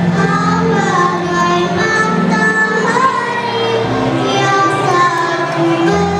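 Children's choir of fifth-grade pupils singing a song with sustained notes, over an instrumental accompaniment.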